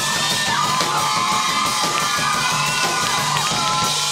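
Electric blues guitar played through an amplifier, with a crowd of girls cheering and whooping over it.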